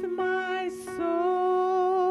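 A woman singing a hymn solo through a microphone with piano accompaniment. From about a second in she holds a note with vibrato.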